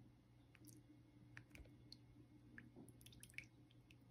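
Very faint drips and small splashes of melted wax as a thin stream pours from a pitcher into the small cavities of a silicone mold, with scattered soft ticks that bunch up near the end, over a low steady hum.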